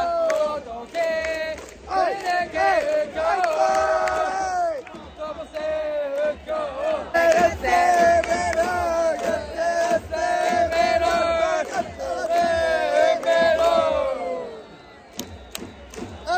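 A group of Hanshin Tigers fans singing a batter's cheer song in unison close up, with the stadium crowd chanting along. The singing is loud and holds long notes, then breaks off about a second and a half before the end.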